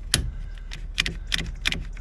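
A clamp being fitted and tightened onto a boat's keel band: a run of about five sharp clicks and knocks, the first the loudest.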